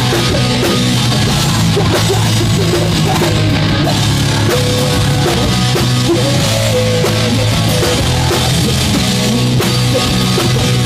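Live hard rock band playing loud and without a break: distorted electric guitar and a full drum kit, with a singer's voice over them.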